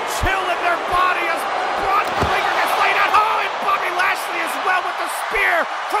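Plastic action figures knocked about in a toy wrestling ring, giving a few short thumps, over a background of voices.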